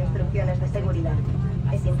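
People talking in an airliner cabin over a steady low hum, with a cabin announcement starting at the very end.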